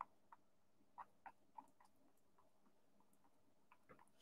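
Near silence with a few faint, irregular taps: a dry scruffy brush pouncing paint onto the painting surface.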